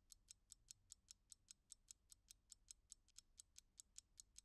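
Faint, even ticking of a mechanical watch, about five beats a second.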